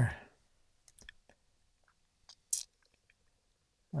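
A few faint small clicks about a second in, then a brief rustling hiss about two and a half seconds in, from a laser pointer and small desk objects being handled.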